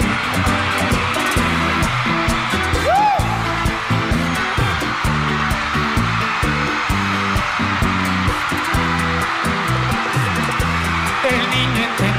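A live bachata band playing an instrumental passage between sung lines, a rhythmic bass line under steady percussion, over the constant noise of a large arena crowd cheering.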